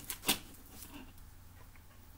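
A single short click or tap about a quarter second in, as a small hand tool is handled at a desk, followed by faint room tone.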